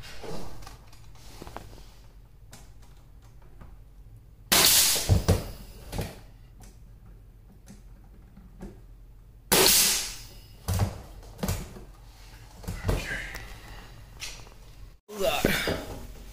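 Pneumatic brad nailer firing nails into wooden trim: two loud shots, each with a short hiss of air, about five seconds apart, followed by several lighter knocks.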